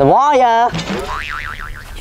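Cartoon 'boing' sound effect: a springy tone that wobbles rapidly up and down in pitch several times over about a second, starting just under a second in.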